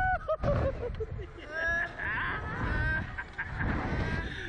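A man crying out in long, wavering yells while being flung on a catapult thrill ride, with wind rushing over the microphone.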